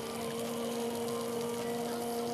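A steady low hum at one pitch with a higher overtone, over a faint even hiss.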